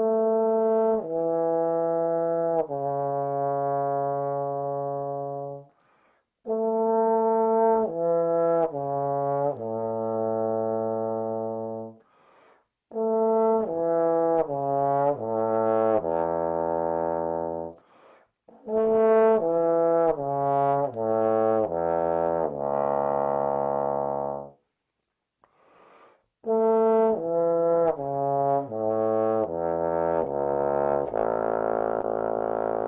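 Bass trombone playing slow, slurred phrases in A major, each stepping downward from around the A below middle C and each reaching lower than the last, into the low register below the bass clef staff. There are short breath gaps between the phrases.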